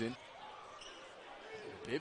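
Faint basketball arena background of a game broadcast: low crowd noise between two stretches of commentary, which stops just after the start and resumes near the end.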